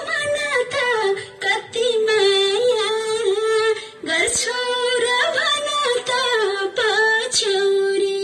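Nepali folk song playing: a woman sings a high, winding melody over a steady held tone.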